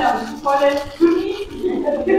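Women's voices talking in a room; speech is the main sound, with no other distinct sound standing out.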